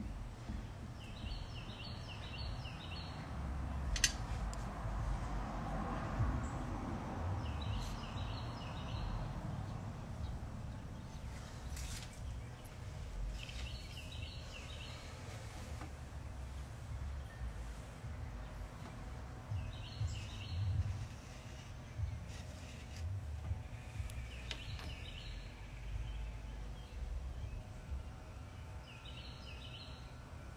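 Outdoor ambience with a low rumble, and a bird calling a short phrase of several quick high notes that repeats about every six seconds.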